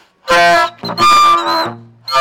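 Music: loud, held notes from a horn-like wind instrument. Two strong notes are followed by a softer third that fades out.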